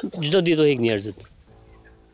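A man's voice for about a second, then faint steady tones.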